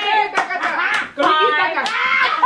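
A few women chanting and singing together in loud, wavering voices, with hand claps, three of them sharp.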